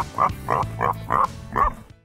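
A dog barking in quick short barks, about three a second, over music with a steady bass line; both fade out at the end.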